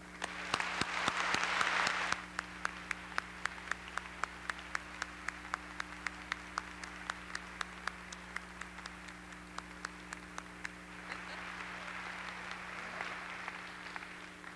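Audience applauding. A single nearby clapper keeps a steady beat of about three to four claps a second over softer applause, and the general applause swells again near the end.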